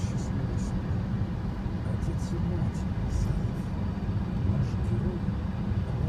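Steady low rumble of a car heard from inside the cabin while it drives through water on a flooded road, with short hissing splashes now and then.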